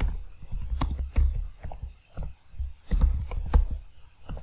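Typing on a computer keyboard: irregular runs of keystrokes as a command is entered.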